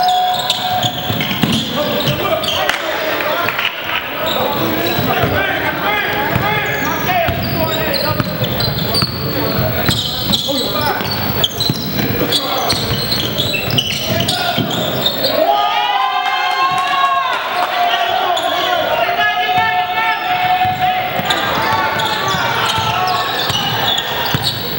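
Basketball game sounds in a gym: a ball bouncing on the hardwood court over indistinct calling voices of players and onlookers.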